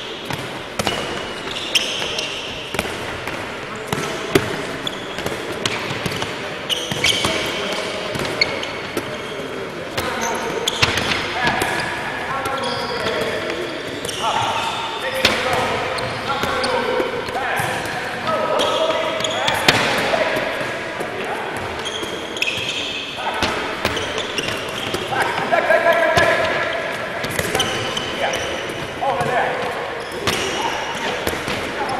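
Handballs bouncing and thudding on a wooden sports-hall floor in a large hall, with repeated short impacts throughout and players' voices behind them.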